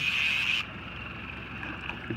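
Steady background noise aboard a boat on open water: a low rumble with a faint wind and water hiss, with a brief louder hiss in the first half-second.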